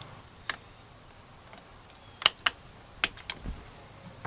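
Sharp plastic clicks and taps from a screwdriver and a yellow plastic male plug being handled as the plug is wired onto an extension-cord lead: about six brief clicks, one early and the rest bunched in the second half.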